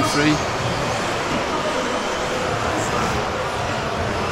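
Steady wash of noise from several electric 2WD RC buggies racing on an indoor carpet track, motors and tyres running together and echoing in a large hall.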